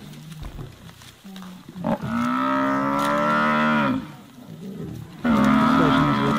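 Cape buffalo bellowing: a long drawn-out call of about two seconds that drops in pitch as it ends, then a second loud bellow starting near the end. These are the distress bellows of a buffalo being brought down by lions.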